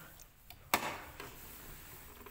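A single sharp plastic click about three-quarters of a second in: the hinged face cover of a Janome sewing machine being snapped shut over the take-up lever mechanism.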